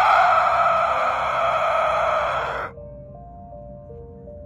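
A costumed scare actor's loud, raspy growling scream into the camera, cutting off abruptly about two and a half seconds in. Sparse, slow background music notes follow.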